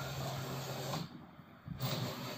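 Motor of a DIY drive pulling a Brother KH-851 knitting machine carriage along the needle bed, running with a steady low hum. It cuts out about a second in and starts again near the end.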